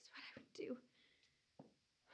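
A woman's faint, quick breaths with a short soft catch of the voice in the first second, then near quiet apart from a small mouth click.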